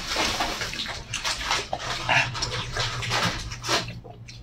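Wet, close-up chewing and lip-smacking of a mouthful of sauce-covered braised pork, irregular and continuous.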